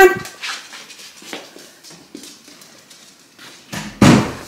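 Faint sounds from a small puppy with quiet shuffling and handling noise, and a louder rustle just before the end.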